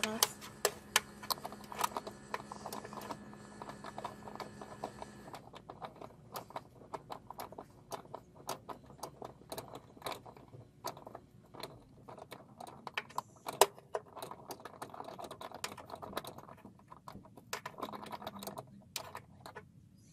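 A wrench working the hydraulic line fittings at the master cylinder: a string of irregular metallic clicks and taps, with one louder knock about two-thirds of the way in.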